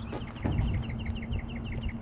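A bird singing a fast run of short, evenly spaced chirps, about eight a second, over a steady low hum.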